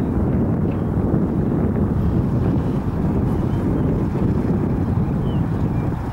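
Scottish Aviation Bulldog's four-cylinder Lycoming piston engine running at low power as the light aircraft rolls out along the runway after landing, heard through heavy wind rumble on the microphone.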